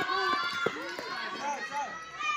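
Many children's voices shouting and calling over one another around a running race, with a couple of short knocks a little over half a second in.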